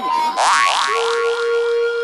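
Electronic music: a short blip melody gives way, about half a second in, to a run of quick upward-sweeping synth zaps, then a single held synth tone.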